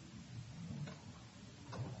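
Two faint, sharp clicks a little under a second apart, over low room noise.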